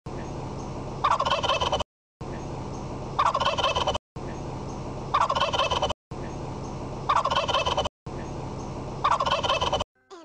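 A turkey-like gobble, a fast rattling call under a second long, repeated five times as an identical loop with short silent gaps between. A steady low hum fills the second before each gobble.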